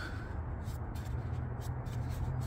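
Faint rubbing and light scraping as a fan clutch is turned by hand on its threads, with a few soft ticks, over a steady low hum.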